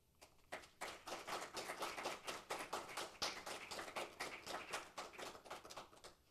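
A small audience applauding: a few scattered claps that fill out into steady applause within about a second, then stop near the end.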